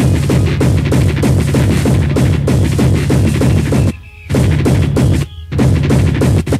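Hardcore techno played loud in a rave DJ set: fast, dense drum hits over a steady heavy bass line. The music cuts out briefly twice near the end.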